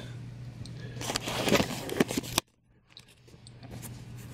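Camera handling noise as the camera is picked up and moved: rustling and scraping with a few small knocks over a low steady hum. The sound drops out suddenly a little past halfway, then faint clicks come back.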